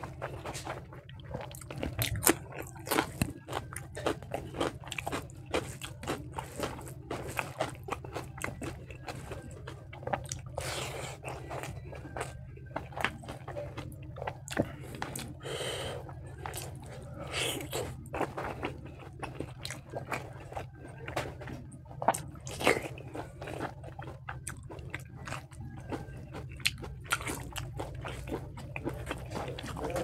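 Close-miked ASMR eating of rice and spicy pork ribs by hand: chewing, biting and wet mouth smacks coming as many irregular sharp clicks, over a steady low hum.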